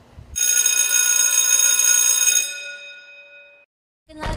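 A bell-like ringing sound effect. It starts suddenly, holds steady for about two seconds, then fades out.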